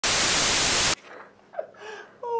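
Loud TV static hiss for about a second that cuts off suddenly, giving way to quiet room sound with a brief faint pitched sound near the end.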